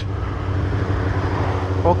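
Kawasaki Ninja 1000SX inline-four engine running at a steady pitch while the motorcycle is ridden, with a steady rush of wind and road noise over it.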